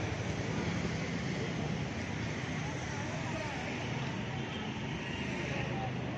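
Street ambience: steady traffic noise with indistinct chatter from a crowd of people.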